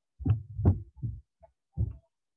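Handling noise from a laptop's built-in microphone as the computer is picked up and carried: a few dull thumps and knocks, the loudest in the first second.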